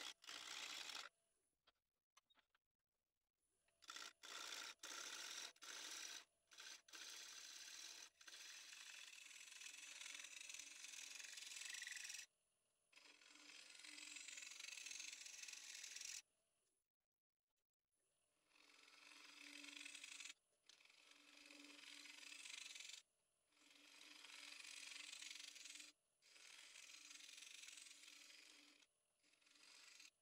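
Faint hiss of a turning gouge cutting a spinning beech-wood disc on a wood lathe: short strokes at first, then longer passes of a few seconds each with brief pauses between them, a low hum running under the later passes.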